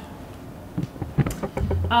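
Small desk handling noises near a table microphone: a few short clicks and knocks about a second in, then a brief low rumble just before speech resumes.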